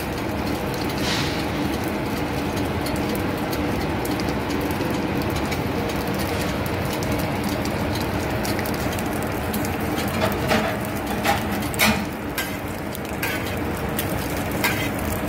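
Bacon and burger buns sizzling on a hot flat-top griddle: a steady, even sizzle, with a few sharper pops or clicks near the end.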